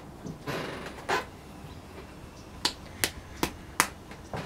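Handling sounds from working a small hand-built clay pot with a wooden tool: a soft rub, then four sharp clicks about 0.4 s apart in the second half.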